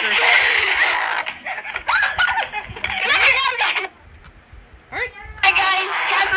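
Wordless, high-pitched voice sounds: playful vocalizing with giggle-like sounds in two stretches, with a short lull a little after the middle.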